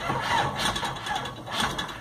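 Starter motor cranking the Datsun 720's diesel engine from cold on a weak, nearly flat battery, for almost two seconds, without the engine catching.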